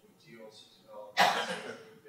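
A single loud cough close to the microphone about a second in, fading over half a second, over faint, indistinct speech.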